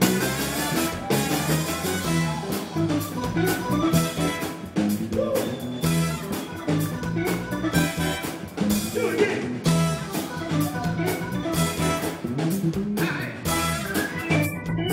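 Live soul band playing an instrumental passage with no vocals: a drum kit keeps a steady beat under electric bass, with guitar, organ and horns over it.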